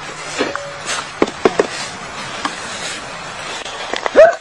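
Aluminium cans being smashed flat one after another by hand strikes against a wooden plank: a handful of sharp, irregular cracks and knocks over a steady background hiss.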